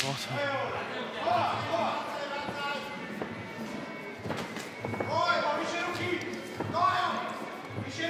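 Raised voices shouting in a large arena hall during a Muay Thai fight, with a couple of dull thuds.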